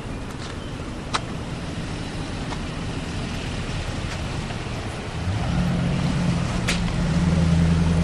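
A motor vehicle's engine close by: faint street noise at first, then a steady engine hum comes in about five seconds in and grows louder as the vehicle moves past.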